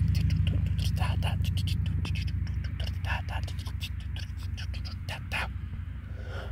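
A deep, steady drone that slowly fades out, with whispering and small clicking mouth sounds scattered over it.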